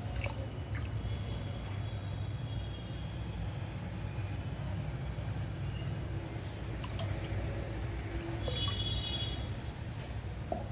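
Liquid potash fertiliser poured from a small plastic measuring cap into a bucket of water, with light drips and a few clicks of the plastic cap, over a steady low background rumble.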